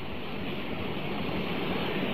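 Steady background hiss and noise of an old lecture recording, with no speech and no distinct events.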